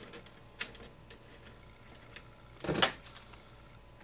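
Light clicks and taps of hands handling the suspension parts and a screw of an RC car chassis on a workbench, with one louder, brief clatter about three seconds in.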